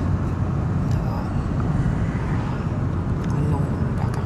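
Steady low road and engine rumble inside the cabin of a moving car at highway speed.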